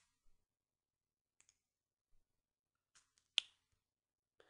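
Near silence, broken by a single sharp click about three and a half seconds in.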